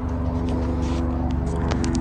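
A steady mechanical drone holding one constant pitch, with a few light clicks in the second half.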